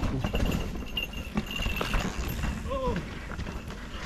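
Mountain bikes coming down a steep, loose dirt chute: tyres scrabbling and knocking over dirt and ruts, with a thin high squeal through the first couple of seconds. A rider gives a short shouted "oh" just before three seconds in.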